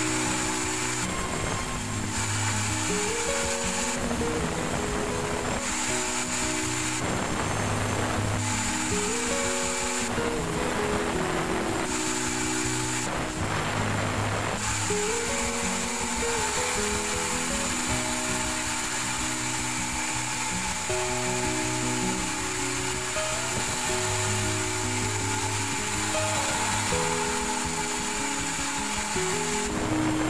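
Sawmill band saw cutting a jackfruit log, a steady high-pitched hiss and whine with several short dips in the first half, under background music with a melody. The log's thick bark makes the cut heavy and dulls the blade quickly.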